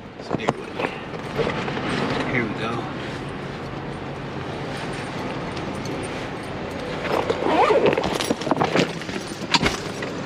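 Indistinct voice sounds over a steady background of traffic noise, with a sharp knock near the end.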